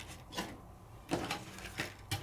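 Cardstock being handled on a craft mat: a few soft rustles and taps of paper, about half a second in and again in the second half.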